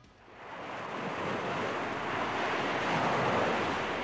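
Ocean surf rushing, swelling up from near silence over the first second and then holding steady.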